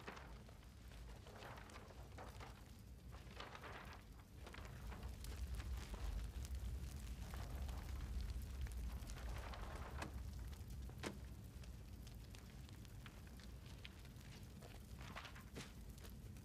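Bonfire of burning papers crackling with scattered sharp snaps over a low rush of flame that swells louder in the middle.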